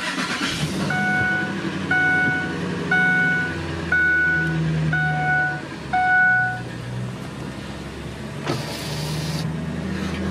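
Ford F-250's 5.4-litre V8 idling, heard from inside the cab, while the dashboard warning chime sounds six times, about once a second, then stops. A short rush of noise comes near the end.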